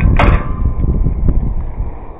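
Wind buffeting the microphone, a loud low rumble that eases off toward the end, with a brief knock about a quarter second in.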